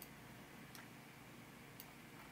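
Near silence: faint room tone with three light computer-mouse clicks, one at the start, one about three-quarters of a second in and one near the end.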